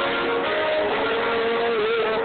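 Live rock band playing, with a lead line holding one long note that wavers and dips slightly in pitch near the end.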